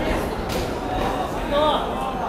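Voices echoing in a large gym hall, with one sharp smack about half a second in and a short, high-pitched shout near the end.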